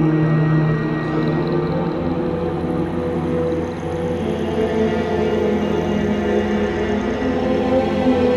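Dark ambient drone music of layered, sustained low tones with no beat. A low note drops out about half a second in, and a higher held note swells in the second half.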